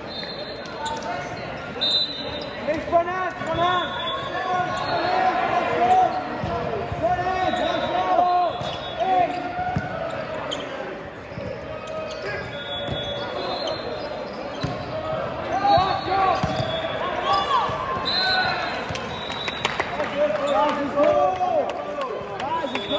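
Volleyball play on an indoor court: many short squeaks from sneakers on the hall floor, a few sharp smacks of the ball being struck, and players' voices calling, all echoing in a large sports hall.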